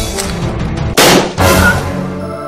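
Two loud rifle shots about a second in, half a second apart, over steady background music.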